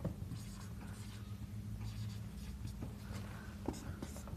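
Marker pen writing on a whiteboard: faint scratching strokes with small taps as each letter is drawn, over a steady low hum.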